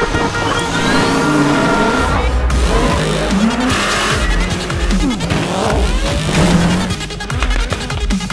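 Rallycross car engines revving hard, their pitch climbing and dropping again and again through gear changes, mixed with background music.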